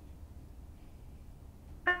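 Faint, steady low hum of room tone, then just before the end a woman's voice starts speaking with a brief, clear "Hi".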